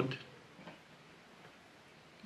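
A single faint click, typical of a jumper wire's pin being pushed into an Arduino Uno header socket, against an otherwise quiet room.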